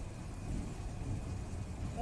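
Steady low rumble of background noise with no distinct event in it.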